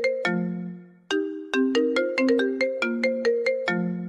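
Mobile phone ringtone: a melody of quick struck notes, a short phrase, a brief break about a second in, then a longer run of notes.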